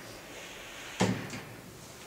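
A single sharp knock about a second in, followed by a fainter click, over quiet room tone.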